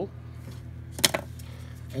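A single sharp plastic click about a second in, as a plastic vinyl-application squeegee is set down on the table, over a steady low electrical hum.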